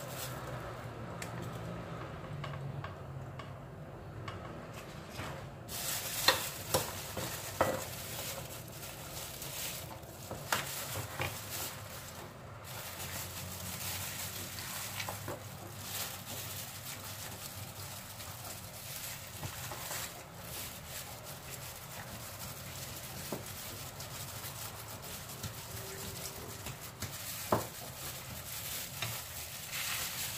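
Banana leaves and a thin plastic food glove rustling and crackling as hands spread taro dough onto the leaves and fold them into parcels, with a few sharp taps and clicks scattered through.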